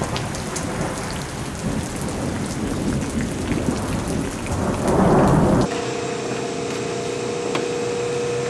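Rain and thunder, a steady hiss of rain with a thunder rumble swelling about five seconds in. Near six seconds the storm cuts off suddenly to a quieter steady hum with a faint steady tone, the ventilation of a gym.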